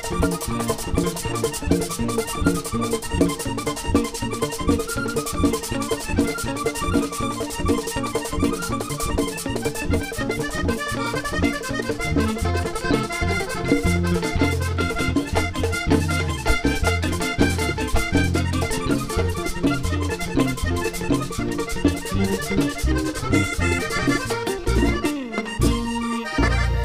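Live vallenato band playing an instrumental passage led by a diatonic button accordion, over percussion keeping a fast, even rhythm. Bass notes come in strongly about halfway through.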